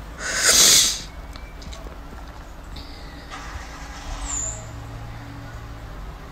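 A crying woman's sharp, noisy intake of breath, lasting under a second, right at the start.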